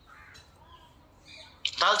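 Faint bird calls in the background during a pause in speech; a man's voice resumes near the end.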